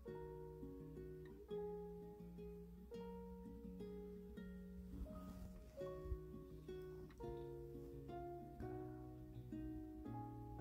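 Quiet background music: a gentle plucked-string melody, with notes picked one after another over a soft bass line.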